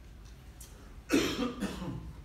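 A single cough about a second in, sudden and loud, fading over about half a second.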